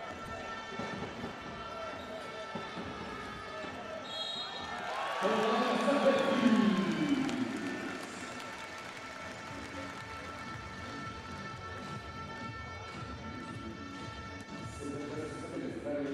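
Arena sound during a basketball game: a basketball being dribbled on the hardwood court over steady crowd and hall background. About five seconds in, voices from the stands swell for a couple of seconds, then settle back.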